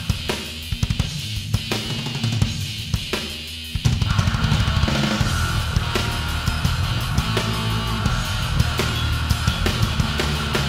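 Instrumental heavy metal recording: a sparser passage of drums and bass, then the full band with distorted guitars comes in louder about four seconds in.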